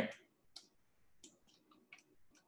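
A few faint, scattered clicks of a computer mouse and keyboard being worked, four or five in two seconds.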